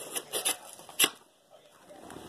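Plastic blister pack of trading cards crackling and clicking as it is handled and opened: a few sharp clicks, the loudest about a second in, then a brief hush.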